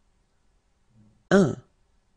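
A single short spoken word, the French number 'un', said once about a second and a half in.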